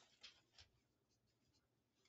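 Near silence: faint writing on paper, with two light ticks in the first second.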